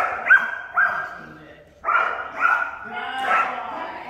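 A dog barking in two quick runs: three sharp barks in the first second, then three more about two seconds in.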